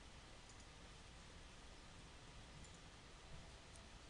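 Near silence with a low background hum and a few faint computer mouse clicks.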